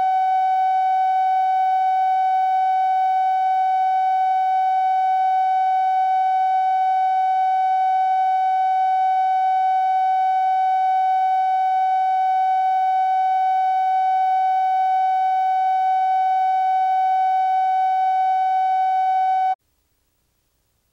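Steady line-up test tone with overtones, played with the colour bars at the head of a videotape; it holds one pitch throughout and cuts off suddenly near the end.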